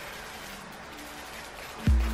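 Faint hiss of background music under a pause in the talk, then a bass-heavy music beat kicking in near the end, about three beats a second.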